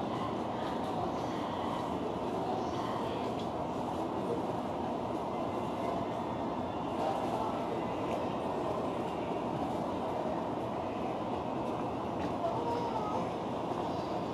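Steady railway station noise heard from the cab of an electric train standing at the platform: an even rumble and hiss that holds level throughout.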